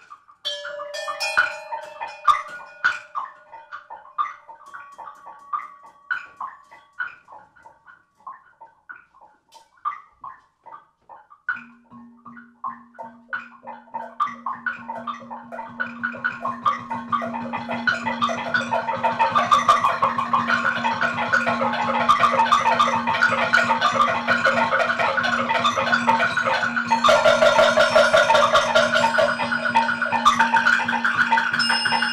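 Free-improvised music: sparse separate mallet strikes on metal and tuned percussion at first. About twelve seconds in, a steady low held tone enters, and the playing thickens into a dense, louder ensemble passage of many struck and sustained notes.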